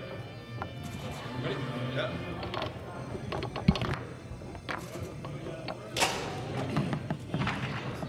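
Foosball being played: the ball is struck and knocked about by the rod men, giving a few separate sharp clacks, the loudest about six seconds in, over a steady low hum.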